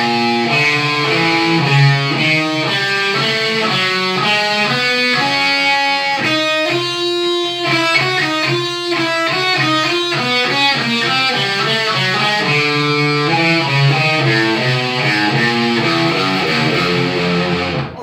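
Electric guitar tuned a whole step down to D, playing a fast, alternate-picked four-note chromatic exercise. The run of notes climbs in pitch through the first half and comes back down in the second, stopping at the end.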